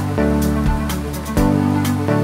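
Background music: electronic track with a steady beat and sustained synth chords.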